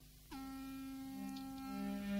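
Music starting: a held instrument note begins about a third of a second in, and a second, lower note joins about a second later and is held alongside it.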